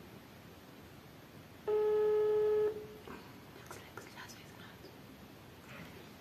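A mobile phone on speaker playing a ringback tone while an outgoing call rings: a single steady beep about a second long, a little under two seconds in.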